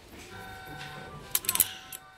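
Background music with steady held notes, and a brief cluster of sharp clicks and rattles about one and a half seconds in.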